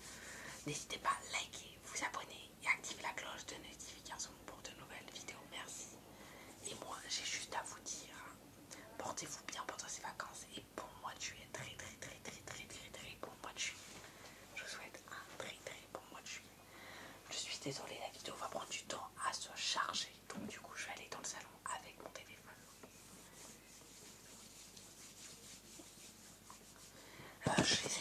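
A boy whispering in French close to the microphone, in short phrases with brief pauses.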